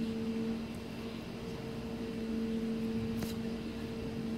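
Steady machine hum, a low drone with a higher tone above it, with a faint brief tick about three seconds in.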